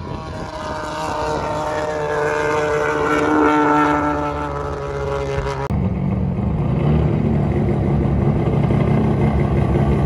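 Liberty Walk Super Silhouette S15 Silvia's four-rotor rotary engine. First comes a loud, high engine note that slowly falls in pitch. After a cut about halfway through, a lower, uneven note follows as the car drives slowly across the tarmac.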